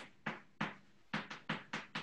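Chalk striking and writing on a blackboard: a string of short, sharp taps, about eight in two seconds, irregularly spaced as letters are formed.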